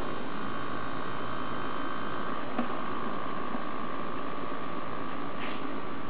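Servo motors of an EMG-controlled prosthetic arm giving a steady whine with a hiss beneath, as they hold the gripper closed on a water bottle; a small click comes about two and a half seconds in.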